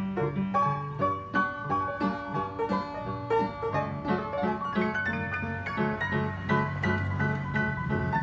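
Old upright piano with its front panels off, freshly tuned, being played: a melody over a steady, rhythmic bass accompaniment.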